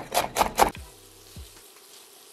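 Kitchen knife chopping garlic on a wooden cutting board: about four quick strikes in the first second, then a quieter stretch.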